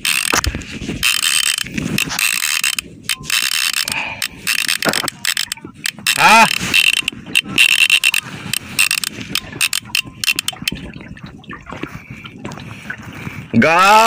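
Shimano Torium 16HG conventional fishing reel cranked by hand, its gears whirring with rapid ratchet-like clicking as line is wound in against a hooked fish.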